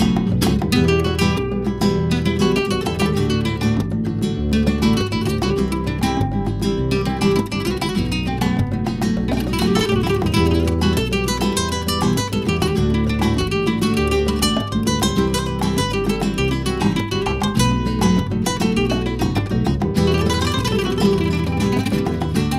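Flamenco-style guitar music: a quick, unbroken run of plucked notes.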